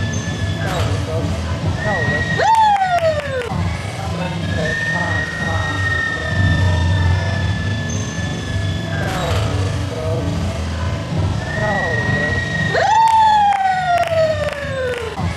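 Gymnastics gym ambience: background music with long held and downward-sliding notes over voices and a steady hum, with a few sharp thuds.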